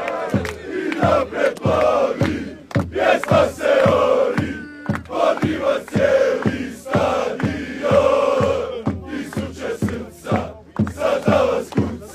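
Crowd of football supporters singing a chant together, over a steady beat about twice a second.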